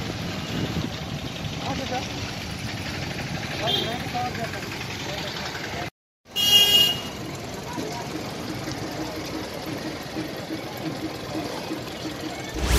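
Street ambience of traffic and distant voices, broken by an abrupt moment of silence about halfway through, then a short loud high-pitched sound. In the second half a vehicle engine idles steadily under the street noise.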